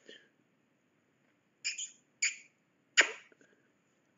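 Three short kissing sounds made with the lips, the last a sharp smack.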